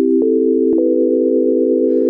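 Pure sine-wave tones from Ableton Live's Wavetable synth held together as a chord. A new, higher tone is added about a quarter second in and again about three-quarters of a second in, each entering with a small click, until five steady tones sound at once.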